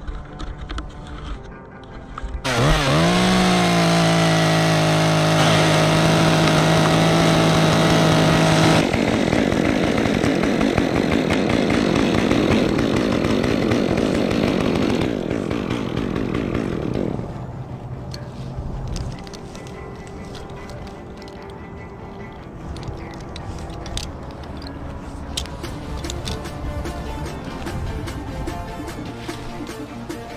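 Chainsaw revving up with a rising whine about two seconds in and held steady at full throttle, then a rougher, noisier stretch, dropping to a lower level with scattered clicks and knocks after about seventeen seconds.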